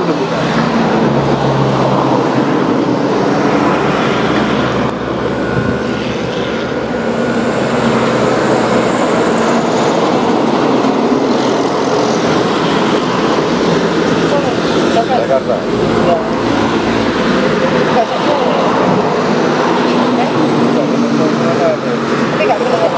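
Electric hair clipper buzzing steadily as it cuts a man's hair, over a steady background rumble.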